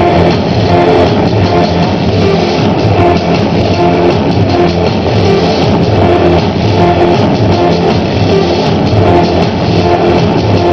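Band playing an electro-industrial track loudly, with a steady, driving drum beat.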